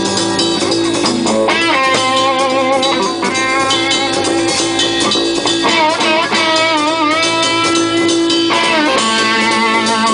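Live rock band playing: two electric guitars and a drum kit, loud and steady, with held notes that bend and waver in pitch, most clearly in the second half.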